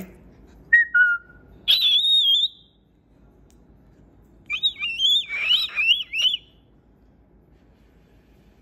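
Whistling in three short phrases: a falling two-note whistle about a second in, a high held note just after, then a longer wavering, warbling whistle in the middle.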